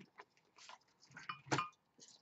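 Tarot cards handled and laid down on a table: a few soft flicks and slaps, the loudest about one and a half seconds in.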